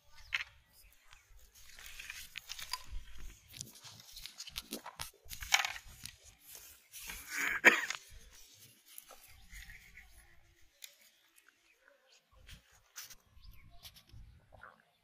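Hands scraping and crunching dry powdered fishing bait in a plastic tub and kneading it into a ball for the hook: a run of irregular rustles and scrapes, loudest in two bursts in the middle.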